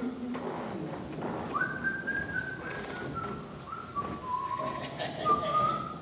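A person whistling a slow tune of held notes, starting about a second and a half in, the notes stepping down in pitch and then rising again near the end.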